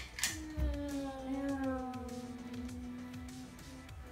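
A child's voice holding one long, slowly falling tone, imitating an airliner's engines as it comes in to land. A short knock sounds near the start.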